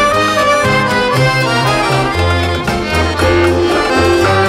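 Instrumental passage of a klezmer-style folk band, with an accordion carrying the melody over a bass line and a steady beat.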